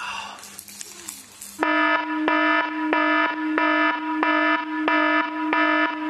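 A loud electronic alarm-like tone, one steady pitch pulsing about three times a second, starts about a second and a half in.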